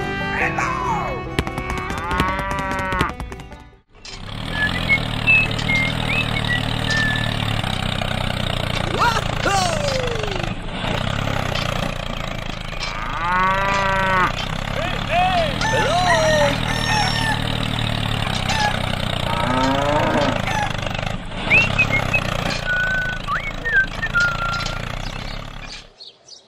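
Farmyard sound effects: a cow mooing, with arched calls about two seconds in and again midway, among scattered bird chirps and other short animal calls over a steady low background. The sound briefly drops out just before four seconds in.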